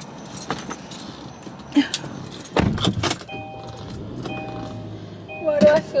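Inside a car: keys jangling and small clicks as the driver settles in, a heavy thump about halfway through, then the car's electronic warning chime beeping steadily about once a second.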